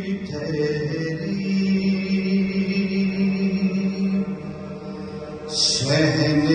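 Male voice chanting a noha, a Shia lament for Imam Hussain, in long held notes with little break. About five and a half seconds in the sound swells louder with a burst of hiss.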